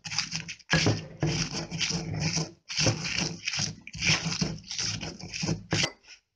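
Stone pestle grinding fried dried chiles de árbol with salt in a volcanic-stone molcajete: a run of rough, gritty grinding strokes with short breaks between them.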